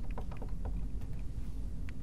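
Marker pen writing on a glass lightboard: a quick run of short strokes, about five a second in the first second, then sparser, over a low steady hum.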